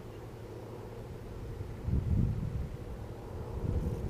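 Wind buffeting the microphone in two low rumbling gusts, the first about two seconds in and the second near the end, over a faint steady hum.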